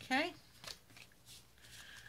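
Sheets of card stock rustling and tapping lightly as a folded card base and a patterned paper panel are handled. A short rising vocal "mm" comes right at the start.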